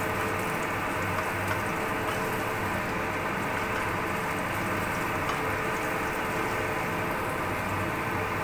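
Minced garlic sizzling steadily in hot oil in a frying pan.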